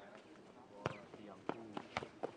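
A nohejbal ball being played on a clay court: four sharp thuds of the ball being kicked and bouncing, the first about a second in and three in quick succession near the end.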